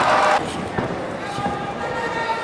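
Arena crowd shouting and cheering, loud until it drops off abruptly about half a second in, followed by a few dull thuds of wrestlers moving on the ring canvas under quieter crowd voices.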